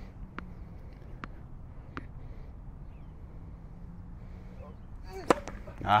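A tennis ball bounced on a hard court three times, faintly and evenly, before a serve. Then, a little over five seconds in, a single sharp crack of the racket striking the ball on the serve.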